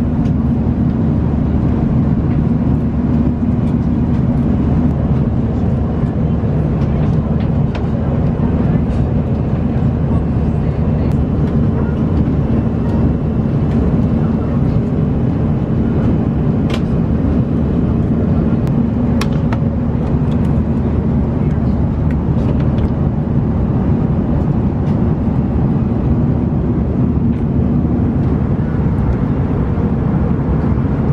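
Airliner cabin noise aboard an Airbus A340-300: a steady low rumble of engines and airflow with a constant hum, and a few faint light clicks.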